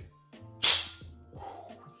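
A hand slapping a square glass whisky bottle once: a single sharp smack about half a second in that dies away quickly.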